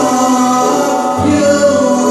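Male choir singing a Turkish ilahi (Islamic hymn), holding long notes that change pitch about halfway through.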